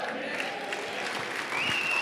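Church congregation applauding, a steady clapping that builds slightly, with a single high held note from the crowd near the end.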